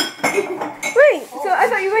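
Kitchen dishes clinking, with a sharp clink at the very start and a few lighter ones after it. A voice follows from about a second in.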